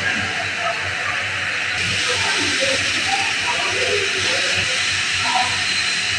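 Steady hissing noise that grows louder about two seconds in, with faint voices or music underneath.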